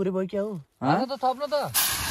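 Raw meat going into a hot pan over a wood fire and starting to sizzle loudly and suddenly near the end, after a stretch of a man talking.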